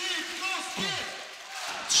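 Basketball arena ambience during play: faint voices from the court and stands carry through a large hall. A commentator's voice comes back right at the end.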